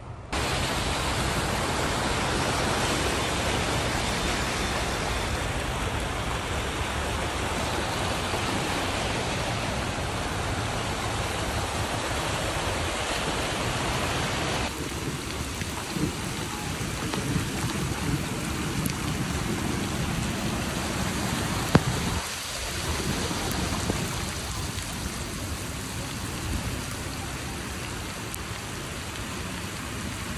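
Heavy rain and running floodwater make a dense, steady rushing noise. It changes abruptly about halfway through, and there is one sharp knock a little past two-thirds of the way in.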